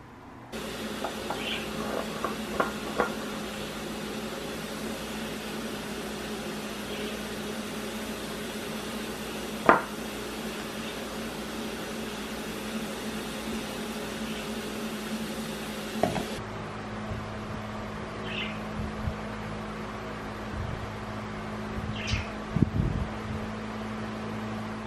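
Steady household hum and hiss of a running fan-like machine, with scattered light clicks and knocks, one sharp click about ten seconds in, and a few faint high chirps.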